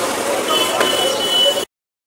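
Busy street noise of vehicles running and people talking, with a thin steady high tone for about a second. It cuts off to silence near the end.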